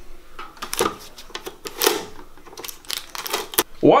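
Paper number tickets being pulled and torn from a take-a-number ticket dispenser: a string of short clicks and rips.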